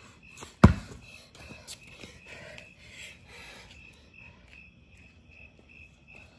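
A basketball bounces once hard on the paved driveway about half a second in, followed by a few much lighter knocks. Crickets chirp steadily throughout.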